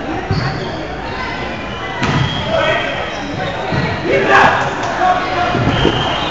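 Volleyball rally in a gym: a ball struck by hands and arms several times, about every two seconds, each hit a sharp slap that echoes in the hall, with players' voices calling in between.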